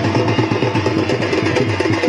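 Live drumming on a barrel drum, a fast, steady rhythm of sharp strokes, with a held note sounding underneath.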